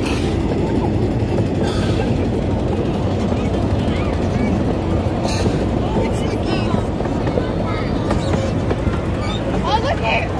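Steady rumble of a miniature ride-on train's cars rolling along the rails, heard from an open passenger car, with riders' voices over it.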